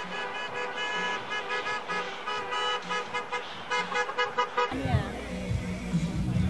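Car horns honking in short repeated beeps at the same pitches. About four and a half seconds in, the sound cuts to crowd voices with a low rumble.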